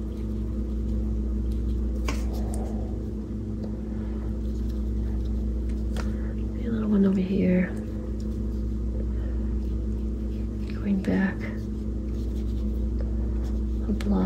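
A steady low hum with several constant tones, a couple of faint clicks, and short murmured or whispered speech about halfway through and again a few seconds later.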